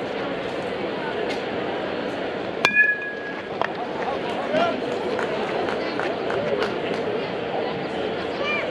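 Metal youth baseball bat striking a pitched ball about two and a half seconds in: one sharp ping that rings briefly. Spectators' voices chatter throughout.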